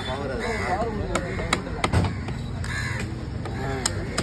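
Knife chopping into a fish on a wooden chopping block, a series of sharp, irregular knocks. Crows caw now and then over it.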